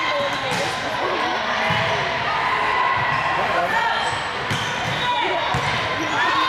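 Volleyballs being hit and bouncing on a hardwood gym floor, several thumps that echo in a large hall over a steady hum of players' and spectators' voices.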